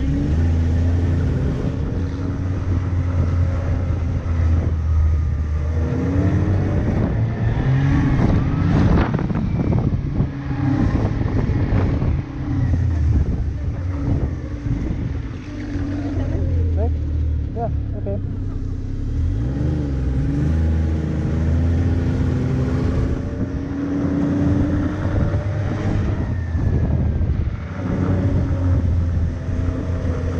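Snowmobile engine running under way, its pitch rising and falling several times as the throttle opens and closes.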